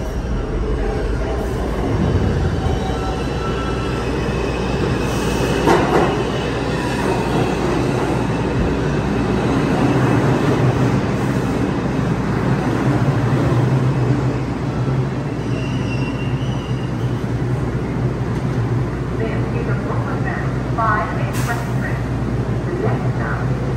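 R142-series New York City subway express train running into the station alongside the platform and slowing to a stop, with continuous wheel and motor noise and a steady low hum. A short run of stepped tones sounds near the end as it stands.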